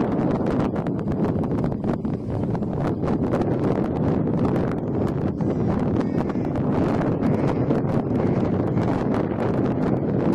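Wind buffeting the microphone in gusts, over the steady drone of a large radio-controlled model triplane's engine flying overhead.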